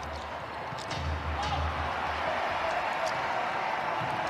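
Live basketball game sound on an arena court: a basketball being dribbled on the hardwood, a few faint knocks, over a steady murmur of arena background noise.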